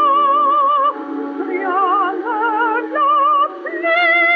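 Early recording, with a narrow and thin sound, of a female mezzo-soprano singing an operatic aria with wide vibrato over accompaniment. A long held note gives way about a second in to a quieter phrase of shorter notes. A loud sustained note returns near the end.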